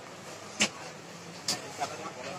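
Steady background noise of a busy shop interior, with two brief sharp sounds about half a second and a second and a half in.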